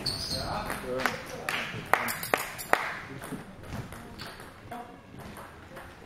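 A table tennis rally: the ball strikes bats and table in a quick run of sharp clicks about half a second apart, echoing in a large hall. After about three seconds the rally stops.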